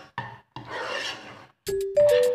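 A spoon stirring and scraping thick curry paste and beef chunks in an enamelled cast-iron pot: a short rasping stroke, then a longer one. A music note comes in near the end.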